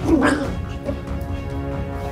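Dramatic background music with steady held tones, with a short vocal cry at the start.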